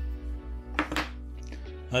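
Background music with two light knocks about a second in, from metal-cased 32650 LiFePO4 cells being handled together.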